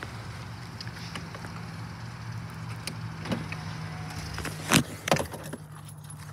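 Minivan engine idling with a steady low hum, with a few sharp clicks and knocks near the end.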